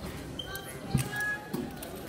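Wrestlers' feet and bodies making two dull thuds on the mat, about a second in and again half a second later, with a few short, thin shoe squeaks.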